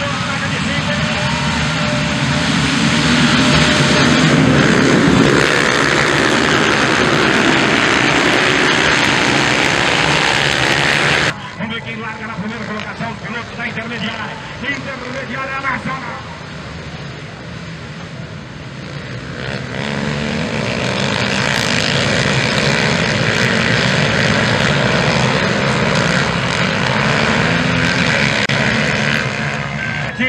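A full field of velocross dirt bikes racing off the start, many engines revving loudly together. About eleven seconds in the sound drops suddenly to a quieter mix of bike engines, which builds again over the last ten seconds.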